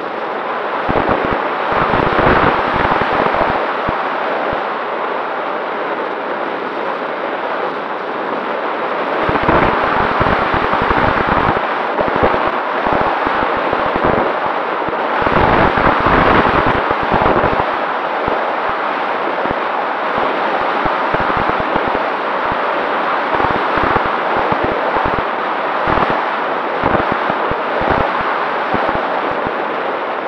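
Heavy wind buffeting on the microphone of a camera riding on a Freewing 737-800 RC model jet as it flies its approach in strong wind. The noise is a rough, crackling rush with several gusty surges, over a faint steady tone from the jet's electric ducted fans.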